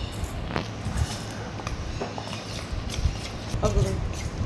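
A metal spoon stirring thick semolina and buttermilk batter in a stainless steel bowl, with a few scattered light clicks of the spoon against the steel.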